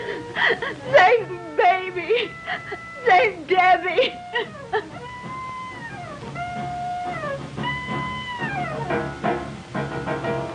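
A person sobbing and whimpering over a film score of held notes for the first half, then the score alone: a few long, high sustained notes, each sliding downward at its end.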